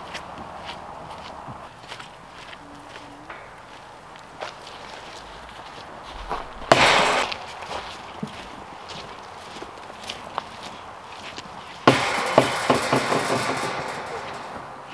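Footsteps with scattered small knocks, a short loud rush of noise about seven seconds in, and a longer loud rustling stretch with quick ticks near the end.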